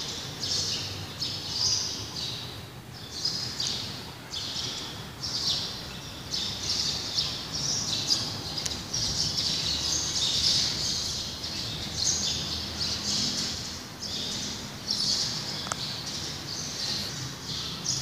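Small birds chirping, many short high calls following one another without a break.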